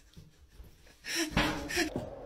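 Quiet for about a second, then a person's voice in a few short, breathy bursts.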